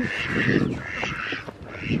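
Domestic ducks quacking repeatedly, a run of several harsh calls in a row.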